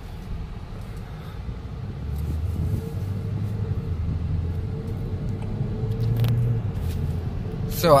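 Low engine and road rumble of a 2017 Chevrolet Cruze hatchback heard inside the cabin as it pulls away gently under light throttle and gathers speed, growing louder about two seconds in. Its six-speed automatic shifts on its own.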